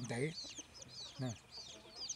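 Roosters clucking: two short, low calls, one right at the start and one about a second in, over faint high-pitched chirping.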